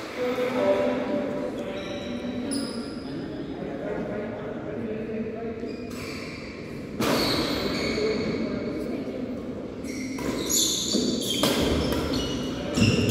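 Indistinct voices echoing in a large indoor badminton hall, with a few sharp knocks near the end.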